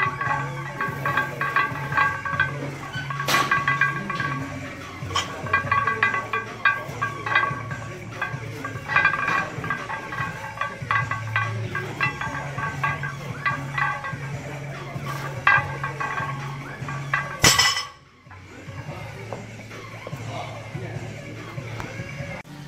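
Background gym music, with the iron plates of a loaded barbell clinking during repeated bent-over rows. About 17 seconds in there is one loud clank as the barbell is set down.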